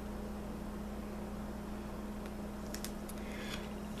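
Quiet steady low hum, with a few faint light ticks and a soft rustle late on as duct tape is pressed and smoothed down along an edge by hand.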